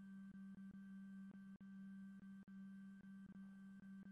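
Faint steady low hum from a Plustek 8200i film scanner's carriage motor while it runs a prescan of a negative.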